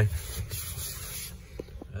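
A hand rubbing and brushing over leather seat upholstery for about a second and a half, followed by two faint clicks.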